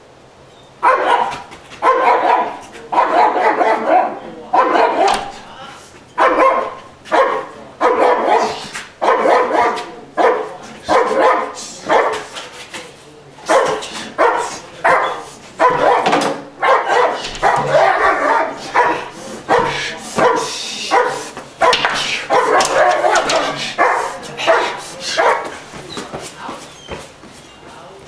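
German Shepherd barking aggressively in loud, repeated volleys, about one bark burst a second. The barking starts about a second in and eases off near the end.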